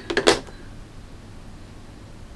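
A brief vocal sound right at the start, then quiet room tone with a faint low hum.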